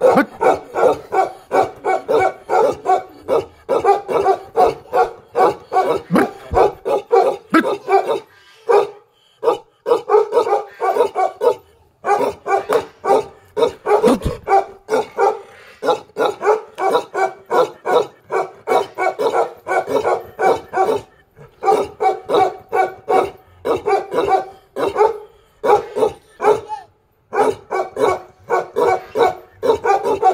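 A large mastiff-type guard dog barking repeatedly and rapidly, about three barks a second, in long runs broken by a few short pauses.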